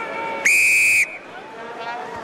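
Rugby referee's whistle blown once to start the game at kickoff: a single steady, high-pitched blast of about half a second, about half a second in.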